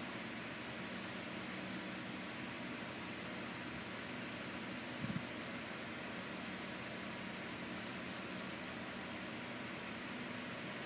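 Steady hiss and low hum of road and engine noise inside a moving car's cabin, with a brief low thump about five seconds in.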